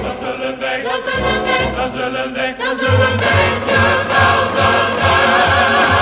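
Orchestral show music with no words sung, sustained pitched notes throughout; a pulsing bass beat comes in about three seconds in and the music gets louder.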